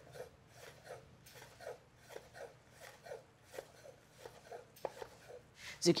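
Chef's knife slicing zucchini crosswise into thin rounds on a wooden cutting board: quiet, even knocks of the blade on the board, about three a second.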